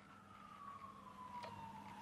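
Very faint single tone slowly falling in pitch through the whole pause, over a faint steady low hum.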